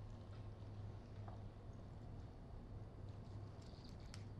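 Quiet handling of a roast turkey: a few faint soft clicks and ticks as the leg is pulled outward by hand, a small cluster of them near the end, over a low steady hum.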